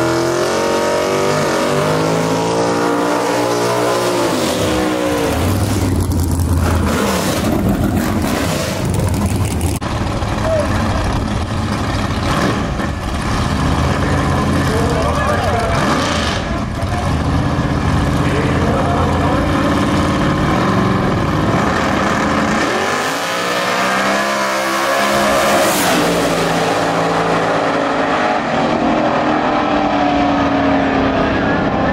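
Drag-race car engines idling and revving on the starting line, pitch rising and falling. In the last few seconds two cars launch and run down the strip. Crowd voices run underneath.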